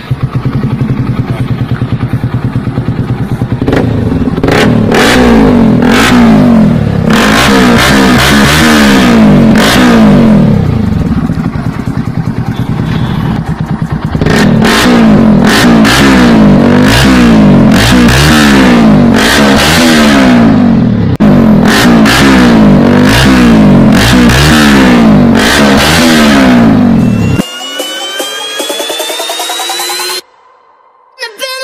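Bajaj Pulsar NS160's single-cylinder engine running through an aftermarket SC Project slip-on exhaust: it idles steadily, then from about four seconds in it is blipped in quick repeated revs. Near the end the engine sound stops and electronic music with a rising tone takes over.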